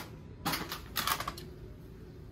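Clear plastic wrapper around a single rose crinkling as it is handled, in two short bursts about half a second and a second in.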